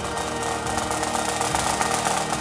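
Pipe band of bagpipes and snare drums playing: a fast, dense drum roll over the steady drones of the bagpipes.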